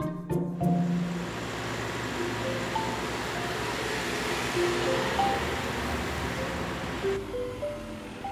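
Background music of sparse single notes over the steady rushing noise and low rumble of an automated side-loader garbage truck driving past on the road; the road noise cuts off suddenly about a second before the end.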